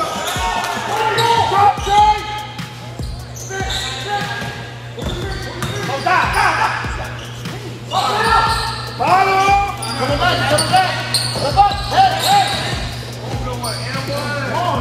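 Game sound from an indoor basketball court: a basketball bouncing on the hardwood, short sneaker squeaks and voices from players and spectators, over a steady low hum.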